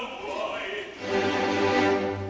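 Live opera orchestra with a sung phrase breaking off at the start, then a chord that swells about a second in and is held steady.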